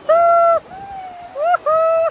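A frightened toddler wailing at the incoming waves: two long, steady, high cries with short rising cries between them.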